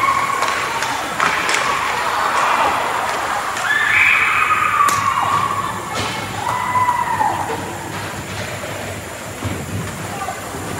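Ice hockey game sound: high-pitched shouts and calls from players and spectators, drawn out and sliding in pitch, with a few sharp clacks of sticks and puck.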